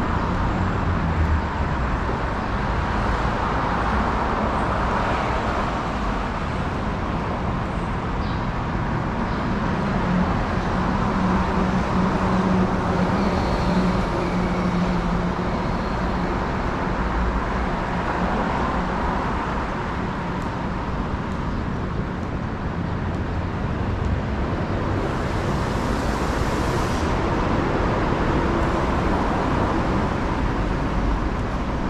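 Steady hum of city road traffic. An engine drone swells out of it in the middle, and a brief hiss comes near the end.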